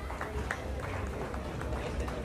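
A few scattered hand claps from a small audience over low background chatter and a steady low hum, with the music stopped.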